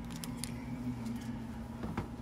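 A steady low electrical hum from a switched-on device, with a few light clicks and rustles of trading cards being handled early on.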